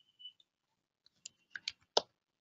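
Computer keyboard keystrokes: a handful of faint key clicks in the second half, the last one the loudest.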